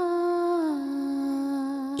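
Background music: one long held melodic note that slides down to a lower held note just under a second in.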